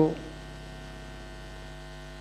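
A steady electrical hum, a set of even, unchanging tones, runs under a pause in a man's speech. His last word trails off just at the start.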